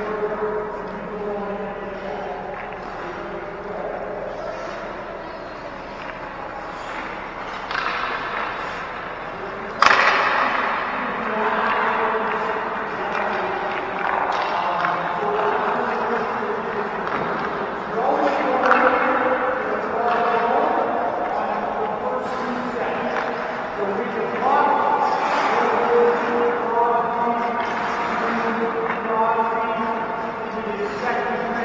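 Distant voices calling out, echoing through an indoor ice arena, with one sharp, loud crack about ten seconds in.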